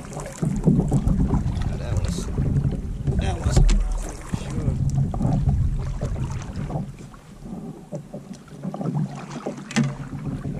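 Double-bladed kayak paddle strokes in the water, with splashes and drips, over a low wind rumble on the microphone that eases about seven seconds in.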